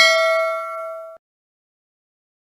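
A bell-like ding sound effect, as used for a subscribe-notification bell, ringing with several clear tones and fading, then cut off abruptly a little over a second in.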